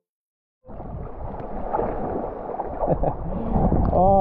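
Sea water sloshing and gurgling around a camera held at the surface of choppy water, with wind buffeting the microphone. It cuts in suddenly about half a second in, after silence.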